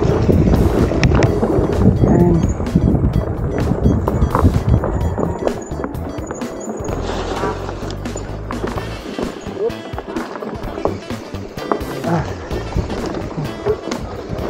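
Electric full-suspension fatbike rolling down a dirt trail over roots, its tyres and frame giving a rough rumble with irregular knocks and rattles from the bumps. The rumble is heaviest for about the first six seconds, then eases. Background music plays under it.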